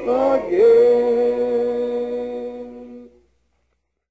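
A cappella voices singing in harmony: the closing chord of the hymn changes pitch about half a second in, is held, and fades out until it ends about three seconds in.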